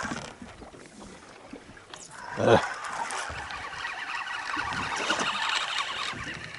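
Fishing reel being wound in, a fine rapid whirring through the second half, with a brief spoken 'uh' about two and a half seconds in.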